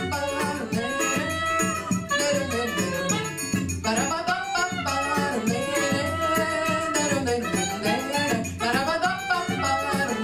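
Live Brazilian forró from a small choro group: saxophone melody and a woman's singing over cavaquinho strumming and hand percussion with a shaker-like rattle, in a steady dance rhythm.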